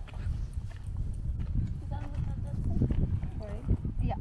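Faint voices of people talking at a distance, over a steady, uneven low rumble with a few soft knocks.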